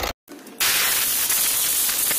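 Compressed-air blow gun hissing steadily, blowing leaked diesel out of the injector wells of a Volkswagen diesel engine before the injectors are removed. The hiss starts about half a second in, after a brief gap.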